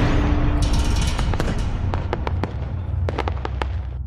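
Logo-intro sound effect: the tail of a loud cinematic boom, a low rumble slowly fading, with crackling and a scatter of sharp sparkle-like ticks from about half a second in that die away near the end.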